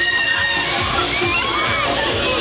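Riders on a swinging pendulum fairground ride screaming and shrieking: high, drawn-out cries at the start and again around a second and a half in.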